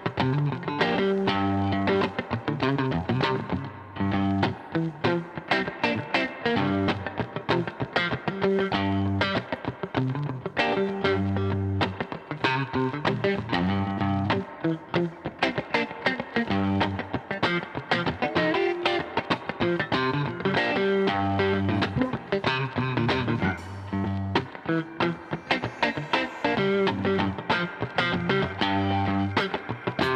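Live funk band playing: electric guitar over a repeating electric bass line, with drums and keyboards keeping a steady groove.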